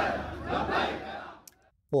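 A large crowd of men shouting together, many voices overlapping. It fades out about a second and a half in.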